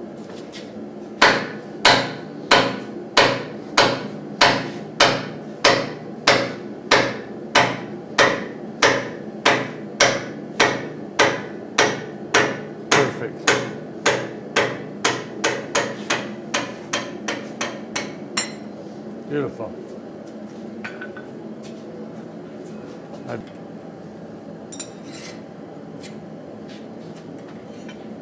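Say-Mak self-contained air power hammer striking hot steel between its dies in a steady run of about two blows a second, the blows growing lighter toward the end. The blows stop about 18 seconds in, leaving a steady hum and a few scattered light knocks.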